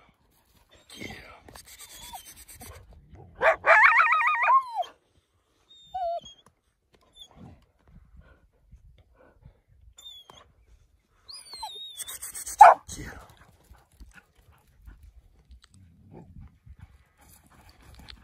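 Leashed dogs whining and yelping with excitement close by. The loudest cry is one wavering whine, about a second and a half long, a few seconds in. A short sharp yelp with thin high squeaks comes about two-thirds of the way through.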